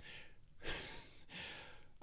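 A man breathing quietly, two faint breaths about a second apart, the first like a sigh.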